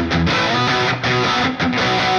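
Electric guitar played through a Headrush Core modelling a Marshall Studio Classic 20 (SC20) on its boosted high-input channel. It plays loud amplified rhythm chords, broken by short stops near the start, about a second in, and about a second and a half in.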